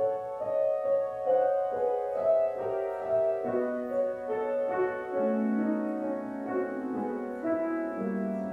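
Piano playing a slow, quiet passage of song accompaniment on its own, with no voice: a steady flow of overlapping notes in the middle register.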